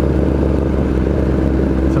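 Inline-four sport motorcycle engine running steadily while the bike is ridden along at an even pace.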